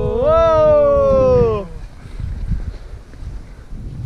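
A person's long, drawn-out yell, "eeeeh!", held about two seconds, rising slightly and then falling in pitch as it ends.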